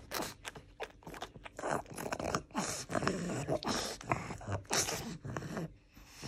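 A pug chewing a treat: a run of irregular crunches and mouth clicks.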